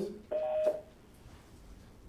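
A single short electronic beep, about half a second long, from a telephone conference line heard over a speakerphone, followed by quiet room tone.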